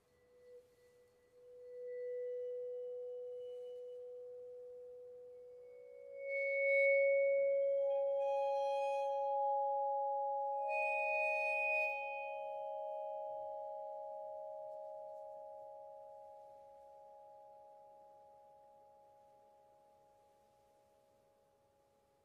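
Bergerault vibraphone bars bowed: pure sustained notes swell in one after another, about two, six, eight and eleven seconds in, overlapping and ringing on as they slowly die away.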